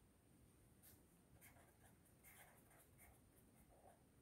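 Faint scratching of a pen writing on paper in short strokes, starting about a second in, against near silence.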